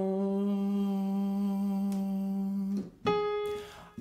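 A man's voice holds a low sung "ah" steadily for nearly three seconds, yawned to darken the tone, as the last note of a descending vocal exercise. Just after it stops, a short keyboard note sounds higher, giving the starting pitch for the next repetition.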